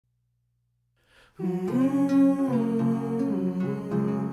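Silence, then background music starts about a second and a half in, with long held notes.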